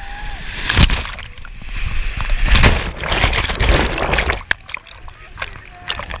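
River rapids splashing and sloshing over a camera at water level on a raft, in heavy surges about a second in, around two and a half seconds and again through the third and fourth seconds, easing near the end.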